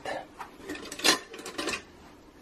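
Soap-making utensils handled on a countertop: a spatula and plastic measuring jugs being set down and picked up, giving a few light knocks and clinks. The loudest comes about a second in.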